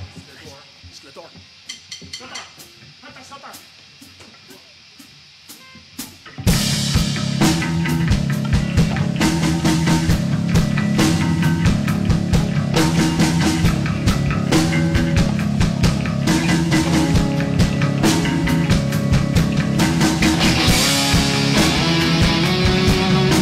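A few faint clicks and taps in a lull, then about six seconds in a rock band (electric guitars, bass guitar and drum kit) starts loud into the instrumental intro of a song with a steady driving beat.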